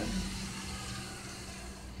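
Quiet room tone with a steady low hum and faint hiss, easing down slightly.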